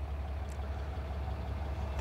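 Low, steady rumble of the truck's 6.7-liter Cummins diesel idling, heard from inside the crew cab.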